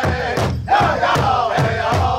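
Powwow drum group singing in unison over a large shared drum that several drummers strike together in a fast, steady beat, performing a women's traditional contest song. The voices drop out briefly about half a second in, then come back in loudly.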